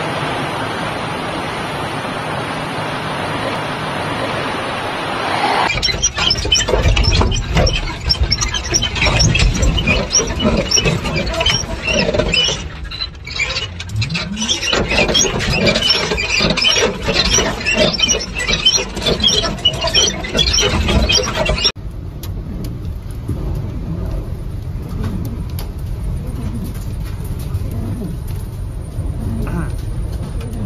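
Strong tornado winds blowing on the microphone of handheld phone footage. The sound starts as a steady rushing noise, then for most of the middle turns into heavy buffeting rumble with many short, shrill squeals coming several times a second. Near the end it settles into a steadier, quieter rush.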